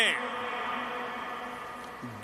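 The tail of a man's amplified voice dies away in the echo of a large stadium over a faint, steady buzzing hum.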